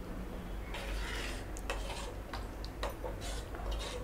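Metal ladle stirring tomato rasam in a stainless steel pan, with scattered light clinks and scrapes of metal against the pan.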